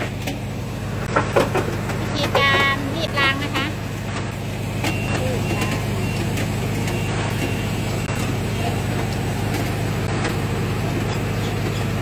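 A steady low motor hum, with brief voices calling out in the first few seconds.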